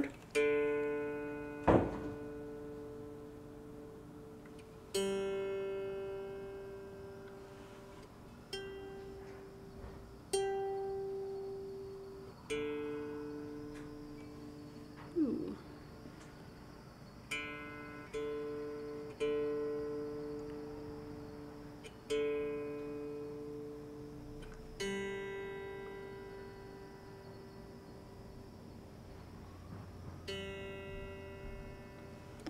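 Electric guitar strings plucked one or two at a time, about a dozen notes each ringing out and fading, with a brief slide in pitch about midway. The notes are being checked against a tuner, fretted and open, to set the intonation after the saddles were moved forward.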